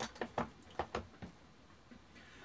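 About six small, sharp mechanical clicks in quick succession over the first second and a half from handling an auto-index turret reloading press, then quiet room noise.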